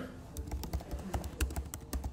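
Typing on a computer keyboard: a quick, irregular run of key clicks, several a second.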